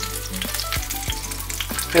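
Smoked kielbasa frying in olive oil in a cast iron skillet: a steady sizzle with many small pops and spits, over a low steady hum.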